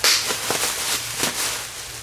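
Plastic bubble wrap crinkling and rustling as it is pulled off a metal part, with a sharp snap at the start and a few smaller snaps after.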